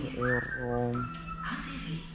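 A voice holding a few steady sung or hummed notes, with a high whistled tone that rises, holds, then steps down to a lower held note.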